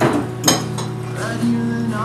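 Cutlery clinking against plates twice, once right at the start and again about half a second in, over steady background music.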